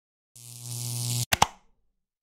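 Logo-intro sound effect: a swell of hiss over a low hum grows louder for about a second, then cuts off into two quick, sharp clicks.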